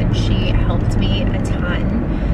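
Steady low rumble of a car's cabin on the move, road and engine noise, under a woman talking.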